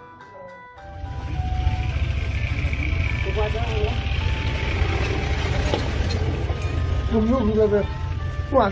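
A steady low rumble of a running vehicle with road and wind noise comes in about a second in, cutting off a few notes of music, and a wavering voice rises over it in the second half.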